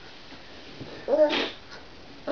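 A seven-month-old baby gives one short, high-pitched squeal about a second in.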